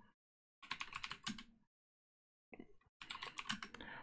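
Typing on a computer keyboard: a quick run of keystrokes about half a second in, a brief faint patter around two and a half seconds, and a second run from about three seconds in.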